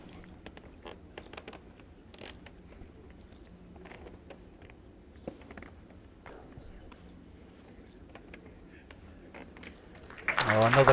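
Hushed indoor arena: a low steady room hum with faint, scattered small clicks and rustles from the seated crowd.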